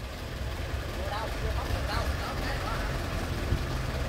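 Old four-wheel-drive truck's engine running, a steady low rumble that becomes more even near the end.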